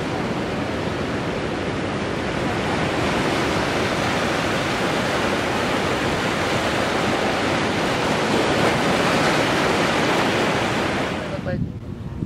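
Ocean surf breaking and washing in over rocks on a sandy beach: a steady rushing sound that swells a little a few seconds in and again later, then stops abruptly near the end.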